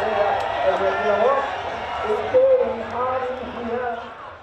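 A man talking, his words indistinct.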